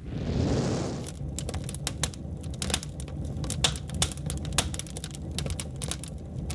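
Logo sound effect: a whoosh in the first second, then dense, irregular crackling clicks over a low rumble.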